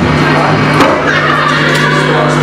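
Live punk band's amplified stage sound between songs: a steady low note hums from the amps under crowd noise, with a few short knocks.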